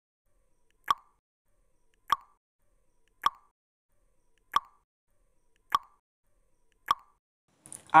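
Countdown timer sound effect: six short, sharp ticks about 1.2 seconds apart, marking the seconds of the answer countdown, with silence between them.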